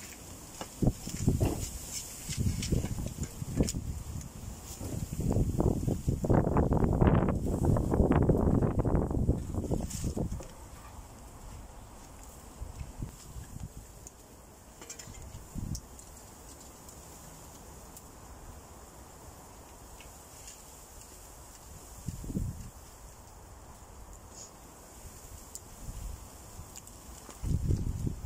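A spade scooping and scraping soil and tipping it into a plastic plant pot to heel in a laurel, the scraping loudest about six to ten seconds in. After that only a couple of soft thumps, and digging starts again near the end.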